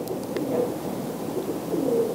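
Faint cooing of a bird, a couple of soft low calls, over a steady hiss.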